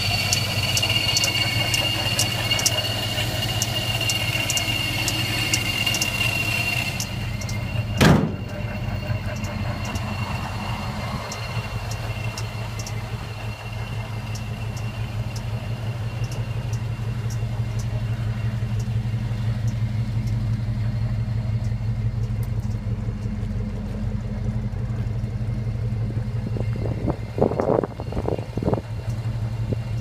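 Supercharged 5.3-litre V8 in a 1968 Chevy C10 idling steadily, with a high steady supercharger whine for the first several seconds. A single sharp slam about eight seconds in, and a few short louder bursts near the end.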